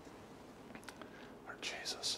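Faint room tone with a few soft clicks, then, near the end, a short breathy hiss like a whisper or sharp exhale from the priest as he bows low at the altar.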